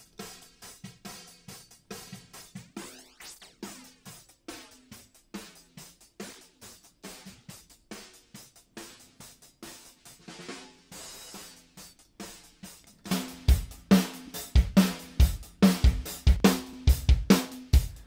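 A drum loop played through the u-he Satin plug-in's tape flange: quick steady hi-hat ticks with a sweeping flange moving through them. Near the end a louder full kit with kick drum comes in, with the 'really lovely thick' tape-flanging sound.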